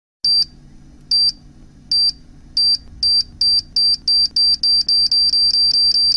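Electronic countdown beeps from an intro sound effect: short high-pitched beeps that start under a second apart and speed up to about four a second, over a faint low drone.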